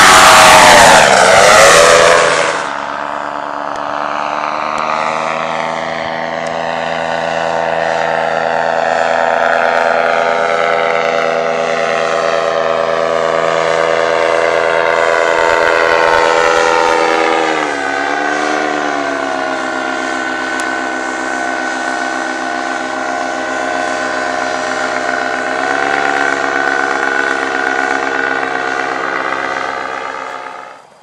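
Paramotor's two-stroke engine and propeller running under power, very loud at first with a falling pitch, then a steadier, quieter drone as it climbs away. The pitch dips briefly twice, in the second half.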